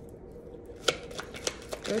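A deck of tarot cards being shuffled by hand: a few sharp card snaps and taps, the loudest about a second in.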